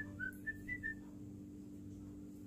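Five or six short, high whistle-like notes in quick succession during the first second, then a faint steady hum.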